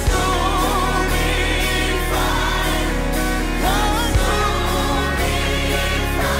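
Gospel worship song: a choir sings long, held lines over steady instrumental backing.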